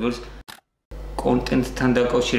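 A man speaking Georgian, cut off about half a second in by a spot of dead digital silence just under half a second long, an edit splice. Then his speech picks up again.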